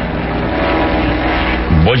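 Steady drone of a seaplane's propeller engines in flight, a radio-drama sound effect. A man's voice starts near the end.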